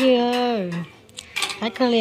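A voice talking, with a few light clinks of chopsticks against bowls and a metal serving tray about a second in, when the talking drops away.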